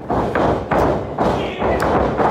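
A run of heavy thuds from wrestlers' feet pounding the wrestling ring's canvas-covered boards as they run the ropes, over voices in the hall.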